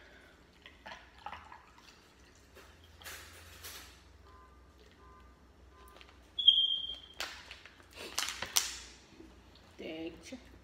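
Water poured from a plastic bottle into a glass of ice, with a brief high squeak about six and a half seconds in and a run of loud splashing bursts over the next two seconds.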